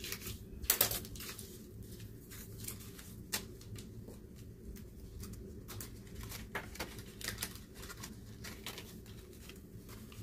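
Paper dollar bills rustling and crinkling as they are handled and slipped into a clear plastic envelope in a ring binder, in many short, irregular rustles and taps, the loudest about a second in.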